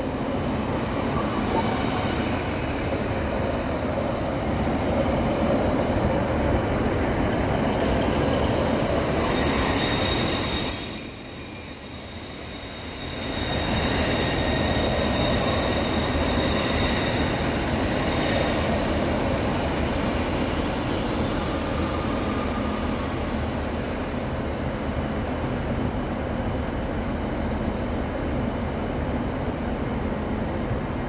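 Northern Class 156 Sprinter diesel multiple unit running slowly into the platform: underfloor diesel engines and wheels rumbling on the rails, with thin high wheel squeal as the carriages pass. The sound drops away briefly for about two seconds around 11 seconds in, then returns.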